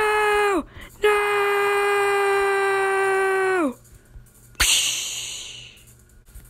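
A girl's voice screaming a held "aaah" twice, a short cry and then one held for nearly three seconds, each dropping in pitch as it trails off. About four and a half seconds in comes a sudden hissing burst that fades away over about a second.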